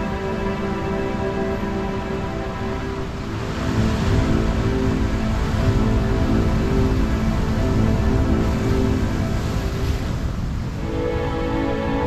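Background music with sustained tones, laid over the rush of heavy surf. The surf swells up about three seconds in and fades out near the end, leaving the music alone.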